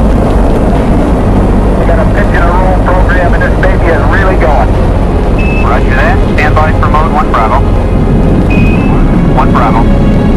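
Steady, loud deep rumble of a Saturn V's rocket engines during liftoff and ascent. A voice talks over it from about two seconds in, and two short high beeps sound in the second half.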